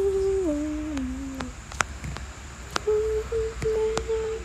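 A person humming: a held note that steps down in pitch twice and fades out about a second and a half in, then, after a pause broken by a few sharp clicks, a new steady hummed note that starts near the end.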